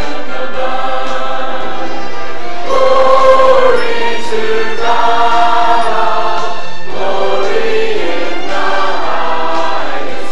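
Church choir of adults and children singing together in long held notes, phrase after phrase.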